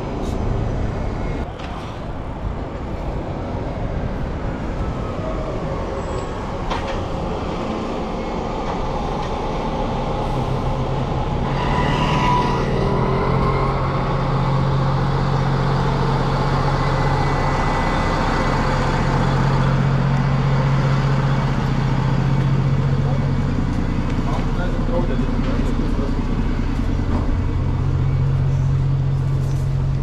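Busy street traffic with a red double-decker bus running close by: a low steady engine hum sets in about ten seconds in and holds, with short breaks, and a brief high squeal comes soon after it starts.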